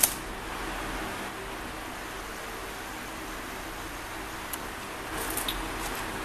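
Steady room hiss with a faint hum and light handling of a loose laptop keyboard: a sharp click at the very start, then light plastic clicks and rustles near the end as the keyboard is moved.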